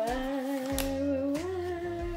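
A person humming a long held note that steps up to a higher held note about one and a half seconds in, like a waiting tune.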